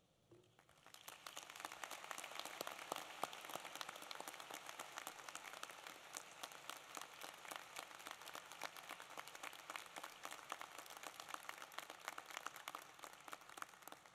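Audience applauding: dense, steady clapping that swells up about a second in, holds, and cuts off abruptly at the end.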